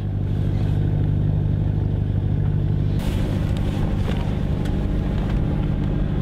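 Fishing cutter's engine running with a steady low drone; about halfway through, a rushing noise joins it.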